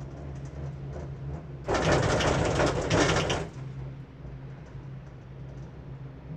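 Inside a Girak six-seat gondola cabin: a steady low hum, then about two seconds in a loud rattling rumble lasting nearly two seconds as the cabin's grip runs over the sheave rollers of a lift tower.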